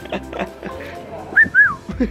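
Two short whistled notes, the second sliding up and then down, over a background of murmur and music.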